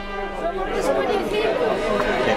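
Several people talking over one another close by, the chatter growing louder about half a second in, over a steady held note of band music in the background.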